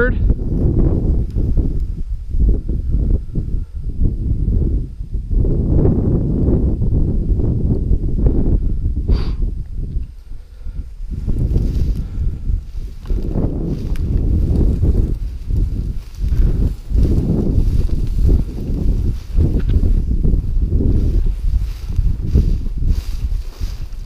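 Footsteps tramping through tall dry grass and thin snow, with grass swishing against the legs and wind on the microphone, uneven and mostly low in pitch, easing briefly about ten seconds in.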